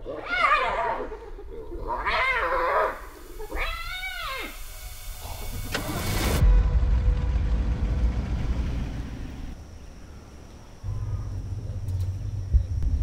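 Spotted hyena calling: a few wavering calls, the clearest one about four seconds in rising and then falling in pitch. After that comes a low rumble from an open safari vehicle on the move.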